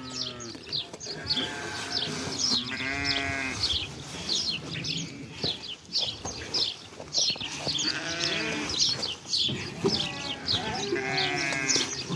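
A flock of sheep bleating: several long, quavering bleats, one after another, over a steady chatter of short high chirps.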